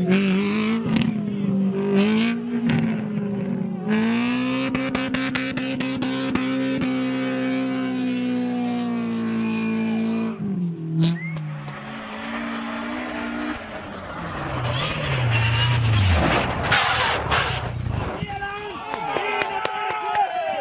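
A rally car's engine revving in bursts and then held at high, steady revs for several seconds as it strains to get out of deep snow while being pushed. Later a second rally car comes by, its engine note falling, followed by a loud rush of tyre and snow noise.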